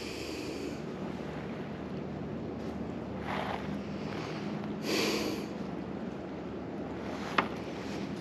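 A man breathing out heavily twice, a few seconds apart, over a steady background of open-air ambience, with a single sharp click near the end.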